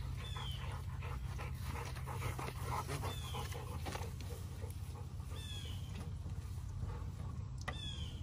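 Two male American Bully dogs panting and moving about on grass, with many small rustles and clicks. A short high falling whistle comes about every two to three seconds over a steady low hum.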